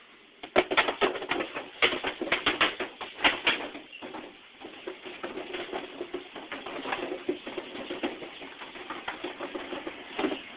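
Cardboard pizza boxes toppling one after another in a long domino chain. A quick run of sharp slaps and clatter starts about half a second in and is loudest over the first few seconds, then settles into a quieter, steady patter as the chain runs on.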